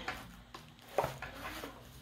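Handling noise from unpacking a cardboard box and its plastic-bagged contents: faint rustling with a few small clicks and one sharp tap about a second in.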